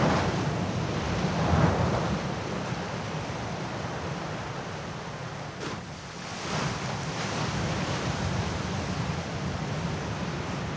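Ocean surf breaking and washing in, with no pitch to it. It swells a second or two in, falls away to its quietest near six seconds, then builds again with the next wave.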